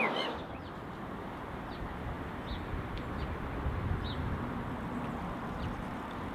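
Outdoor ambience: a steady low rumble with a few short, faint bird chirps scattered through it.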